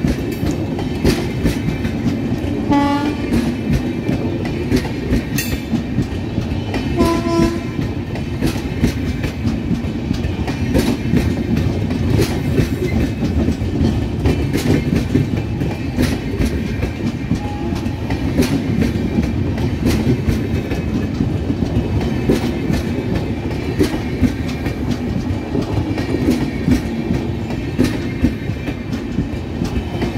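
Passenger coaches of an express train rolling past close by at speed, the wheels clattering steadily over rail joints and the points as the train crosses from the main line to the loop line. Two short train horn blasts come about three and seven seconds in.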